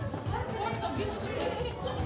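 Indistinct chatter of several voices in a large hall.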